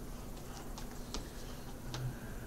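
Scattered light clicks, about eight of them at irregular spacing with one stronger about a second in, over a steady low hum.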